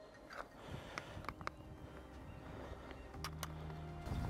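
Faint clicks and light knocks of carp fishing tackle being handled at the rods, over a quiet outdoor background. A low steady hum comes in about three seconds in.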